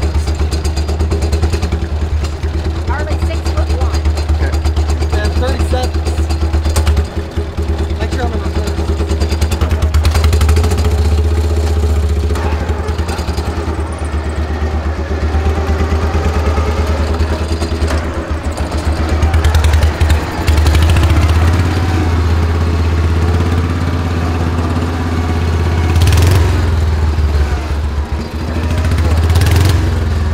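Engine of a lifted Cub Cadet garden tractor running steadily with a deep, even rumble.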